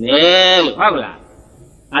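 A man's voice preaching a Buddhist sermon, drawing out one long, slightly wavering vowel, then a short syllable and a pause of about a second before speaking again.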